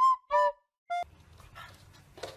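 Border collie puppy giving three short, high-pitched yips in the first second, each dropping in pitch at its end. Then only faint room noise.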